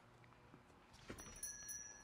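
Near silence: faint, low background sound from the episode, with a faint high ringing about a second in.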